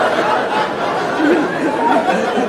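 Audience laughter and chatter: many voices at once, loud and steady, after a joke.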